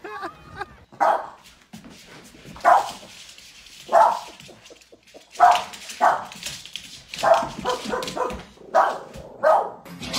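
A dog barking again and again: about ten short single barks spaced a second or so apart, some coming in quick pairs.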